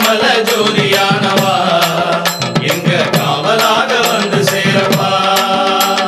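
Tamil devotional song to Lord Ayyappan: a chant-like melody over steady percussion strokes.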